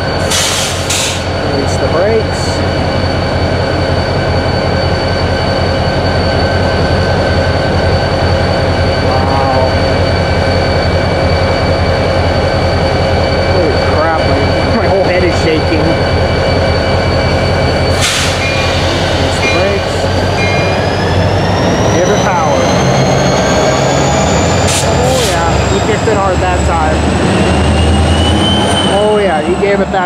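Union Pacific diesel locomotive engine running steadily at close range. About two-thirds of the way through, a high whine climbs for several seconds and drops back near the end as the engine is throttled up. A sharp clank comes about halfway through.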